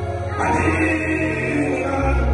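Live gospel music: singers over a band of electric guitars, bass and keyboard, with a held bass note underneath. A new sung phrase comes in about half a second in.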